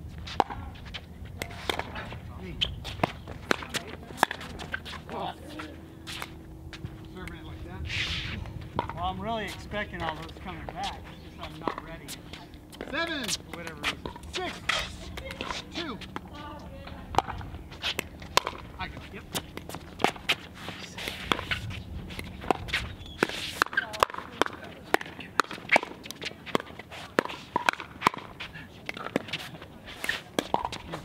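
Pickleball rally: paddles hitting the hollow plastic ball in a run of sharp pops, mixed with the ball bouncing on the hard court and shoes on the surface. The hits come thicker and faster near the end.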